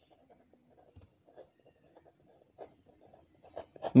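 Pen writing on paper: faint, irregular scratching strokes as words are written by hand.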